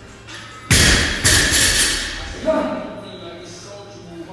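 A loaded barbell dropped on the gym floor: two loud crashes about half a second apart, each ringing off over about a second.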